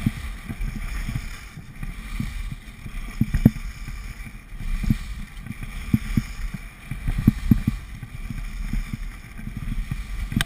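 Wind buffeting an action camera's microphone as a skier moves downhill, a steady rush broken by many irregular low thumps, with skis running over groomed snow.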